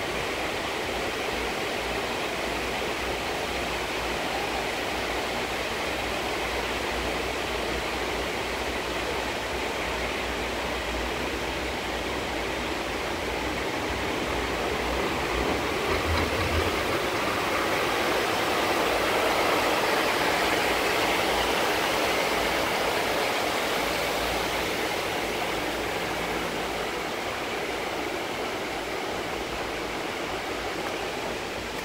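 Steady rushing noise of a ride in an open cabin of a Doppelmayr cabriolet lift: air rushing over the microphone along with the running haul rope and cabin, growing somewhat louder midway.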